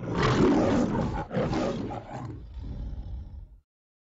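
A lion roaring: a loud roar, a brief break about a second in, a second roar, then a quieter trailing growl that cuts off shortly before the end. It is the MGM studio-logo lion roar that closes the cartoon.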